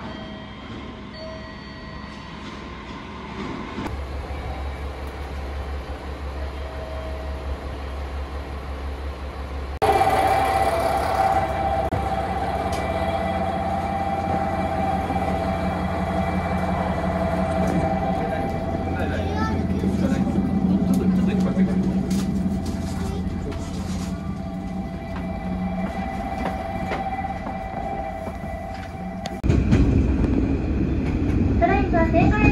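The steady hum of a stationary KiHa 40-series diesel railcar, heard first from the platform and then, from about ten seconds in and louder, inside the carriage. Passengers' voices sound in the background.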